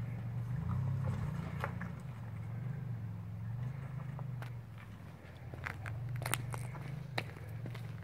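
Lifted pickup truck's engine running low and steady as the truck crawls down a granite slab in four-low, with scattered sharp clicks and crunches close to the microphone.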